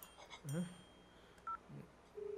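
A single short phone keypad tone (a two-tone dialing beep) about one and a half seconds in, between two brief low murmurs.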